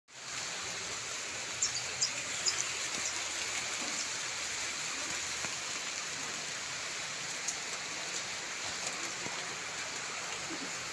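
Steady rain hiss, with a few sharp ticks of drops about two seconds in.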